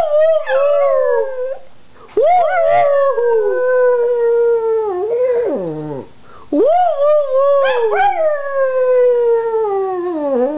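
A pug howling: three long howls, each rising quickly and then sliding slowly down in pitch over several seconds, with short breaks between them.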